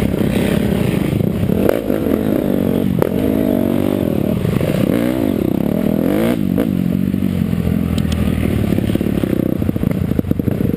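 Dirt bike engine heard close up while being ridden, its pitch rising and falling again and again as the throttle opens and closes, with a few sharp knocks along the way. Near the end the engine note drops as the throttle comes off.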